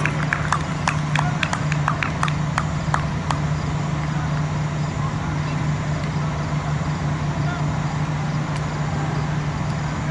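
A quick run of about ten sharp hand claps, roughly three a second, in the first three seconds, over a steady low hum.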